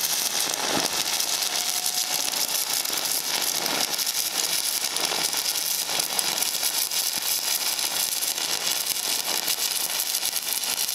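DC stick welding arc on aluminum, the electrode burning with a steady, dense crackle and sputter.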